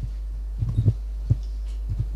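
Handheld microphone being passed from one person to another: a few dull thumps of handling noise over a steady low electrical hum.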